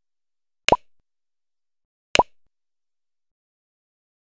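Two short pop sound effects about a second and a half apart, each a sharp click with a quick upward-sliding pop, from an animated subscribe-button end screen.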